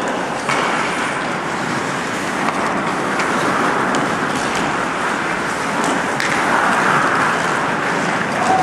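Ice hockey game play in an indoor rink: a steady rushing noise with a few sharp clicks scattered through it.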